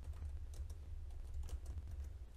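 Computer keyboard typing: a few soft, separate keystrokes over a steady low hum.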